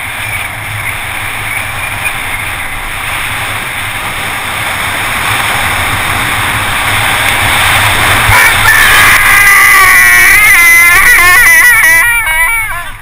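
Wind rushing over the camera and mountain-bike tyres hissing on wet tarmac on a descent, getting louder as speed builds. From about eight and a half seconds in, a loud, wavering high-pitched squeal from the bike's brakes being applied before a corner.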